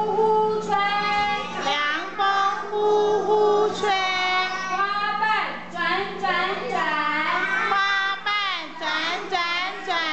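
A group of young children singing a children's song together.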